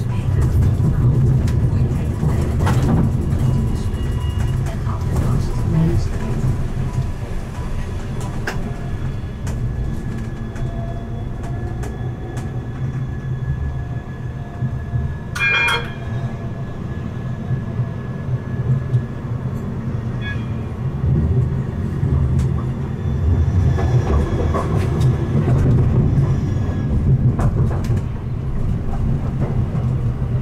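Siemens Avenio low-floor electric tram running on rails, heard from on board: a steady low rumble of wheels and running gear that grows and eases with speed. A short ringing signal sounds about halfway through.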